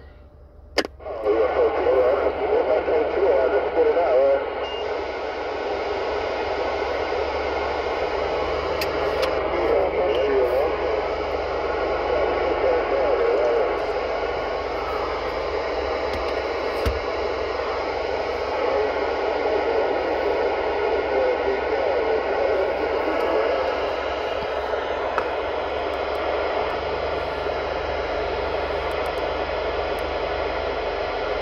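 CB radio receiving on AM, its speaker giving out steady skip static with faint, unintelligible distant voices mixed in, swelling and sinking a little at times.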